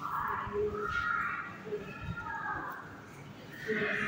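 Faint, indistinct voices in the room, with no clear words.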